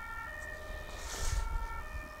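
A distant siren: steady high tones that change pitch, over a low background rumble.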